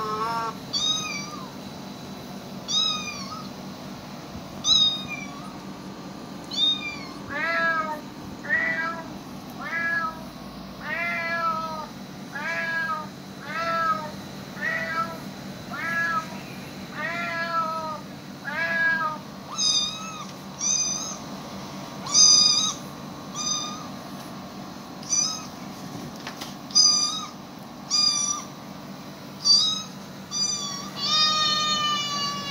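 Cat meowing over and over, each meow a short rise-and-fall call: a few high meows about two seconds apart, then a run of lower meows about one a second, then high meows again in the last third.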